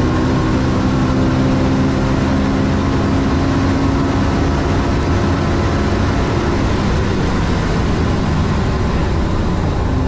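Koenigsegg Regera's twin-turbo V8 at full throttle near 400 km/h, under heavy wind and tyre rush. About six seconds in the engine note fades as the car comes off the throttle and brakes hard from top speed, leaving mostly wind and tyre noise that eases as it slows.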